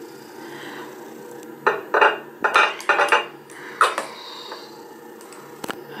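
Light clicks and knocks of a skincare serum bottle and its cardboard box being handled, about six in quick succession from about a second and a half to four seconds in.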